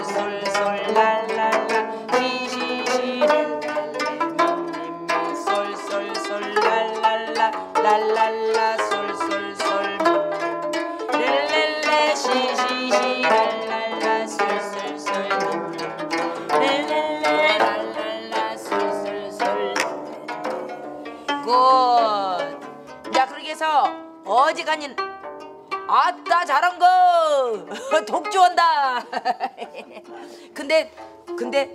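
Several gayageum (Korean twelve-string zithers) played together as a beginners' plucking exercise: a steady run of plucked notes. In the last several seconds the notes bend up and down in pitch as strings are pressed.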